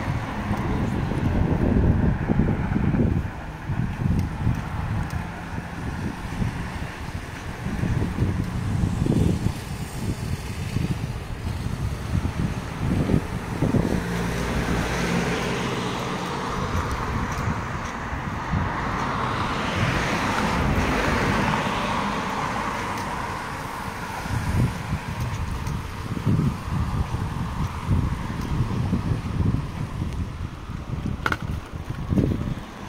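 Wind buffeting the microphone in gusts, over road traffic: cars passing on the street, one swelling and fading a little past the middle.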